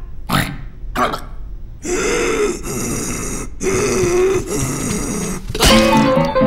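An animated character's wordless grunts: two short ones, then longer drawn-out grunting sounds. Near the end a sharp burst of sound, and music begins.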